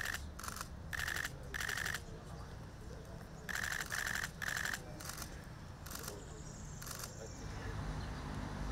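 Press photographers' camera shutters firing in about ten short bursts of rapid clicks, in continuous shooting mode, over a low background rumble.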